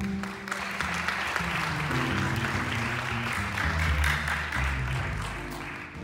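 Audience applause, a dense clapping that thins out near the end, over a jazz trio that keeps playing: double bass notes low underneath, with piano.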